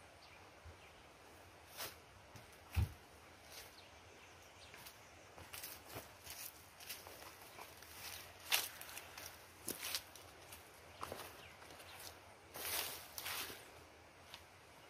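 Footsteps on dry dirt and leaf litter close by, with scattered rustles and knocks and one heavier thump about three seconds in.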